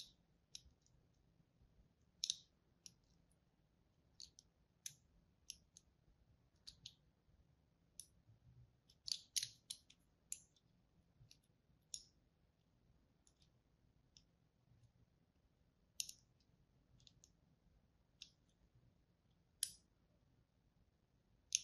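A thin blade scoring the surface of a bar of soap, giving short, crisp clicks at uneven intervals, a cluster of them about nine seconds in.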